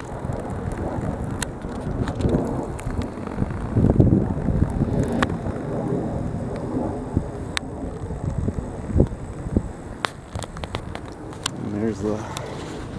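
Uneven low rumble of outdoor background noise, swelling briefly about four seconds in, with a few sharp clicks scattered through it.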